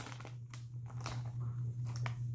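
Foil Doritos chip bag crinkling several times as it is handled and passed between hands, over a steady low hum.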